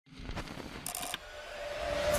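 Record player mechanism clicking as the tonearm lowers, then a phono cartridge's stylus setting down on a vinyl record with a short burst of crackle about a second in. A faint tone then swells toward the end.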